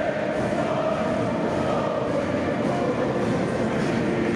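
A large crowd singing together in a big echoing hall: a dense, steady mass of voices with no breaks, typical of a Croatian patriotic rousing song (budnica) sung by the assembly.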